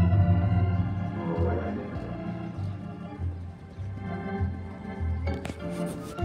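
Organ music with held chords over a pulsing bass line, with a few sharp clicks about five and a half seconds in.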